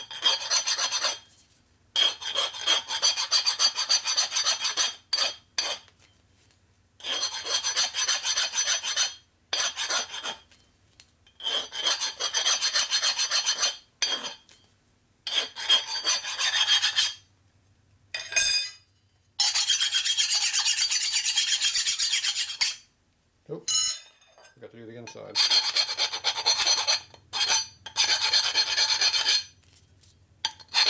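Hand file rasping on the machined edge of a rectangular steel tube to deburr it. It goes in runs of quick short strokes a few seconds long with brief pauses between, the metal ringing with a high tone under the file.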